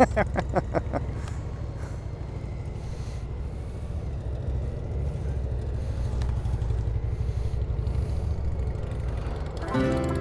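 Honda Gold Wing's flat-six engine running at low speed with a steady low rumble as the motorcycle rolls off, after a short laugh in the first second. Music comes in near the end.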